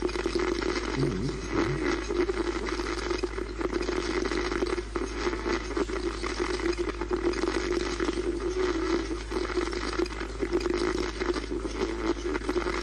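Frank's Box ghost box, a modified radio sweeping through stations, putting out a continuous run of crackling, choppy static over a steady hum.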